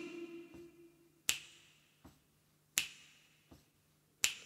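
Finger snaps keeping the beat in a sparse vocal jazz arrangement. There are two sharp snaps about a second and a half apart, with fainter ones between them, while a held sung note fades away at the start.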